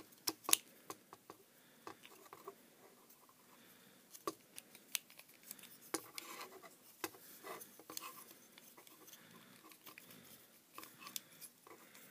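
Plastic parts of a Hasbro Transformers Voyager Class Megatron action figure clicking and scraping as it is hand-transformed. There are scattered sharp clicks throughout, the loudest about half a second in, over faint rubbing.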